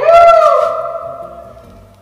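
A loud high sung note that slides up at the start, is held, and fades away over about a second and a half: a comic musical sound effect laid over a quiet background music track.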